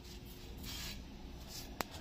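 Quiet cooking sound of a roti on a hot iron tawa: a faint steady hiss, with one sharp click near the end.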